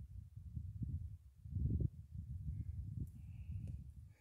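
Low, uneven rumble of wind on the microphone, swelling briefly between one and a half and two seconds in.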